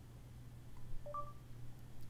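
Android Google voice search start chime from the phone: a short two-note rising beep about a second in, over a faint low hum.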